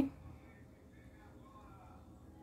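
A woman's spoken word cut off at the very start, then near silence: quiet room tone with a faint steady hum.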